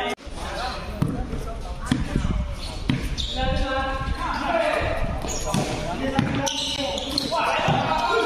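A basketball bouncing on a hard court during a game, with knocks about a second apart in the first three seconds, and players' voices calling out on the court.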